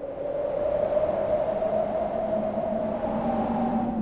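Rushing wind of a ski jumper in flight, swelling in and then holding steady, under a sustained droning tone that rises slightly in pitch.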